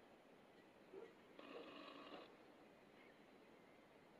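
Near silence: room tone, with a faint short sound of several steady tones lasting just under a second, about one and a half seconds in.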